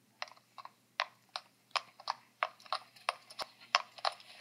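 Horse hoofbeats, a clip-clop sound effect of several horses walking on hard ground: sharp, uneven hoof strikes at about three a second.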